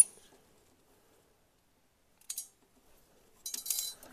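Short metallic clicks and clinks from a hand crimping tool being worked on a wire connector: one brief click about two seconds in, then a quick cluster of clicks near the end.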